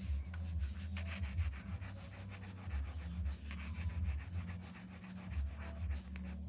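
A pencil scratching across sketchbook paper in many short, quick strokes.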